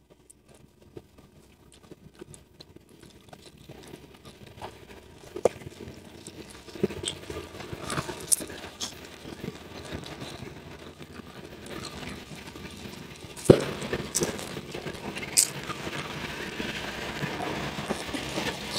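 Raw red tilapia being pulled apart by hand close to the microphone: scattered small wet clicks and smacks that start faint and grow busier. One sharp click comes about two-thirds of the way through, and mouth sounds follow as a piece goes into the mouth near the end.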